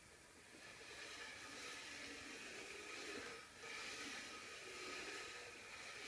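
Faint, soft scraping hiss of a plastic Ouija planchette sliding across the cardboard board under two people's fingers, picking up about a second in and easing briefly in the middle.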